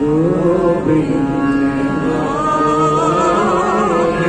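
Sikh gurbani kirtan: a man sings a slow, gliding melodic line that wavers near the end, over steady held chords from harmoniums.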